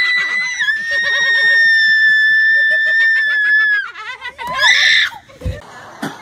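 A girl screaming in fright at a turtle crawling up her: one long, very high-pitched scream held for about four seconds, sagging slightly in pitch, then a second, shorter scream. A low thump follows near the end.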